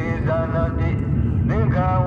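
Steady road and engine noise inside a moving car, with a voice chanting over it in long, held, pitched notes that glide upward about one and a half seconds in.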